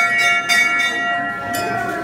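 Temple bell being rung: quick repeated clangs with a sustained metallic ring that keeps sounding and fades away in the second half.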